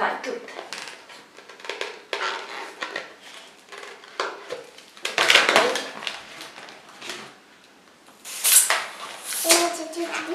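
Long latex modelling balloons being handled and twisted, giving irregular rubbing and scraping bursts, the loudest about halfway through and again near the end.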